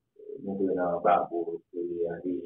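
A man's voice speaking, a low-pitched flow of talk with a short pause in the middle.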